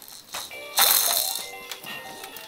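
Electronic ride-on toy's speaker plays a loud crashing sound effect about three quarters of a second in, then a tune of short stepped notes.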